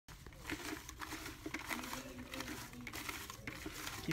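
Paper raffle tickets rustling and crinkling as a hand stirs them around in a plastic bucket, in quick irregular bursts.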